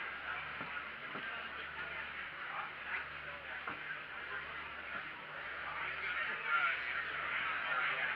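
Background chatter of many people talking at once, with no voice close by, over a steady low hum.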